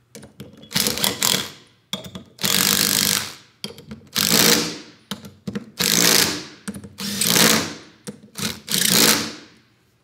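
Cordless impact driver running the end-cap bolts down on a rack-and-pinion actuator, in about six short bursts roughly a second and a half apart, each dying away as the tool stops.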